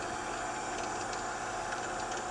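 Drill press motor running steadily with the center drill spinning free, not cutting: an even machine hum with a constant tone.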